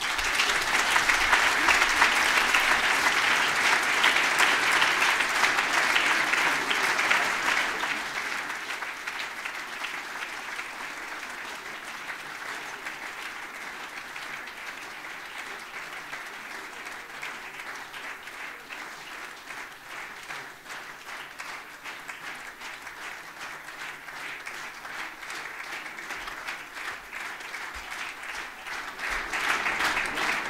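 Large audience applauding: loud at first, easing after about eight seconds into lighter, steady clapping, then swelling again near the end.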